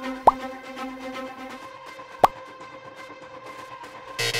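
Background electronic music with held tones, with two short, quick rising pop sound effects about two seconds apart, one near the start and one just past the middle.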